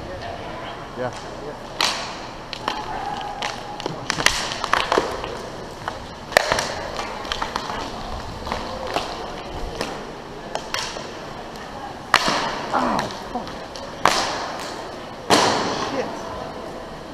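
Roller hockey play heard from the helmet: hockey sticks clacking together and slapping the puck, a series of sharp, irregular knocks that echo around the rink, over the steady roll of inline skate wheels on the rink floor.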